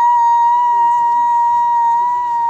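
A gibbon calling: one long, high hoot that rises in pitch, holds a steady note for a few seconds and falls away at the end.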